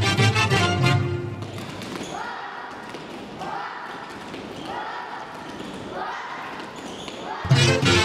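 Recorded Latin American folk dance music that drops to a quieter break about a second and a half in, with short rising phrases repeating about once a second, then comes back at full strength near the end. Dancers' feet thud on the tiled floor.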